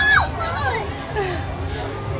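Young children shouting and squealing excitedly, high voices rising and falling in pitch, loudest at the start.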